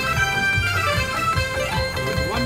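A slot machine plays its big-win celebration music, a busy tune over a repeating low bass figure, while the win meter counts up.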